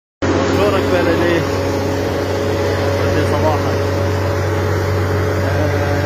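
Steady low drone of a car's engine and cabin heard from inside the moving vehicle, with a man's voice speaking briefly near the start and again midway.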